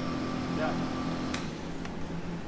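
Steady electric hum with a faint high whine from a running Becker vacuum pump. About a second and a half in, a sharp click is heard and part of the hum and the whine stop.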